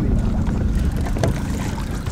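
Steady low rumble of strong wind buffeting the microphone on an open boat, with a few faint clicks.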